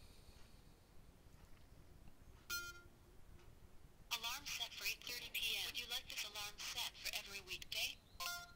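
A short chime from the Amazfit Verge smartwatch about two and a half seconds in. Then, from about four seconds in, Alexa's voice comes from the watch's small speaker, answering the request to set an 8:30 pm alarm.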